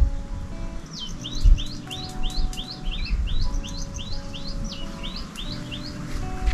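A songbird singing a quick run of repeated slurred whistled notes, about three a second, starting about a second in and stopping near the end. Soft background music with held notes plays underneath, along with low rumbling gusts of wind.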